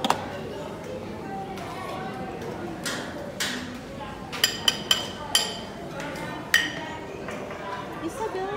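Dishes and metal serving utensils clinking at a buffet counter: about five sharp clinks in the middle of the stretch, some ringing briefly, over a steady background of people talking in a dining hall.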